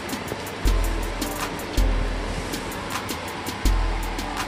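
Background music with a beat: deep bass kicks and a steady run of hi-hat-like ticks.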